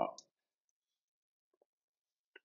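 A man's voice trailing off at the very start, then near-total silence from noise-suppressed video-call audio, broken only by a faint click about one and a half seconds in.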